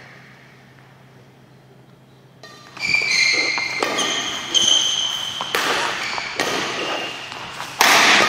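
A badminton doubles rally: court shoes squeaking on the court floor and several sharp racket-on-shuttlecock hits about a second apart, starting about three seconds in after a quiet opening.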